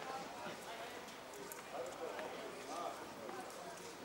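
Distant shouted calls from players and people around a football pitch, raised voices that come and go, with a few faint sharp knocks.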